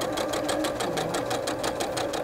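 Electric sewing machine running steadily at speed: a rapid, even clatter of stitches, roughly eleven a second, over the motor's hum.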